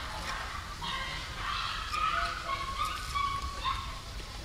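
Macaque giving high-pitched whimpering squeals, a string of short calls starting about a second in, with a longer held note near the end.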